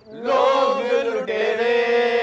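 Male voices singing a slow melody in long held notes, the first drawn out for about a second and a second note starting just past the middle.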